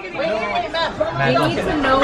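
Speech: people at a table talking over background chatter.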